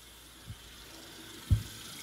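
Two low thumps: a faint one about half a second in and a much louder one about a second and a half in, over faint steady hiss.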